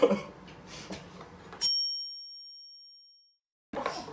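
A single bell-like 'ding' sound effect, added in editing, rings out about one and a half seconds in and fades away over a second or two over dead silence, marking a time-skip cut.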